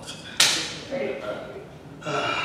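One sharp crack about half a second in, ringing away briefly in the hall, followed by a faint voice.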